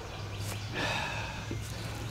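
Quiet outdoor background with a steady low hum, and a soft brief rush of noise about a second in.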